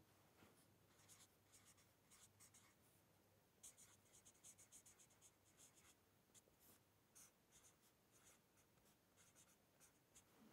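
Very faint scratching of a felt-tip marker writing on paper, in short irregular strokes, busiest a few seconds in.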